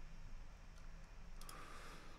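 A few faint computer mouse clicks as the lyrics page is scrolled, the loudest a quick pair about one and a half seconds in.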